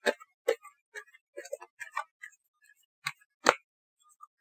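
Tarot cards clicking and tapping as a hand handles the deck: a string of short, irregular clicks, the loudest about three and a half seconds in.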